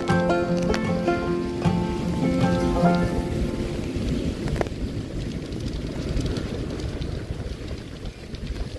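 Background music that fades out about halfway through, leaving wind buffeting the microphone with a steady low rumble.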